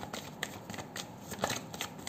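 Tarot cards being shuffled and handled: an irregular run of soft card flicks and taps, with a few sharper snaps.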